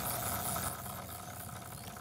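Fox EOS 12000 big-pit carp reel giving line to a hooked, running Siamese carp: a steady, even whirr that fades slightly toward the end.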